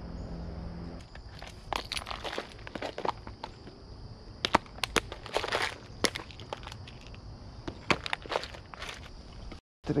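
Irregular clicks, taps and rattles of a clear plastic lure box being handled and opened close by, with a steady high insect buzz behind.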